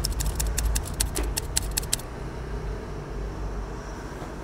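A quick run of light, sharp clicks for about the first two seconds, then only a low steady hum.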